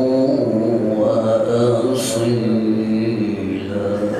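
A man's melodic Quran recitation (tilawat), one long drawn-out phrase of held, ornamented notes that step in pitch, with a brief sibilant consonant about halfway through.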